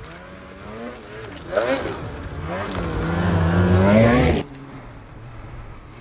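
Polaris Boost turbocharged two-stroke snowmobile revving as it comes down through deep snow, faint at first, then louder with its pitch climbing to a peak about four seconds in before it cuts off suddenly. A low steady engine hum remains after.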